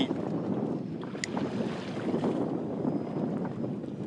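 Wind buffeting the microphone and water lapping against the hull of a small fishing boat, a steady noisy wash with a single short click about a second in.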